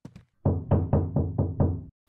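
Knocking on a door: a quick run of about seven knocks, a little over four a second, starting about half a second in.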